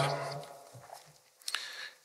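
A man's voice trailing off at the end of a word, then a pause of quiet room tone with a faint click about one and a half seconds in.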